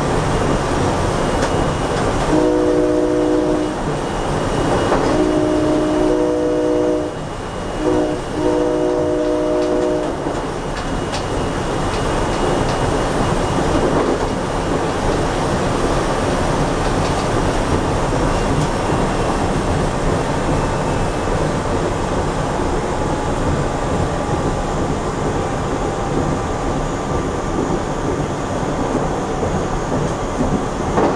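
Silverliner V electric train's horn sounding long, long, short, long, the standard warning for a grade crossing, starting about two seconds in and finished by about ten seconds. Under it, the train's steady running noise at speed.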